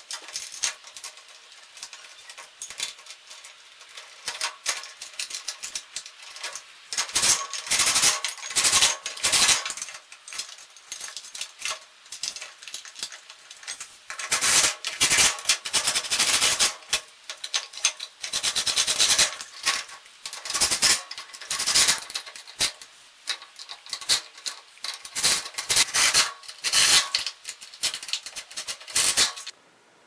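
Cordless drill driving the mounting bolts of caster wheels into a steel tool cabinet's base in repeated short runs, with clattering metal between runs.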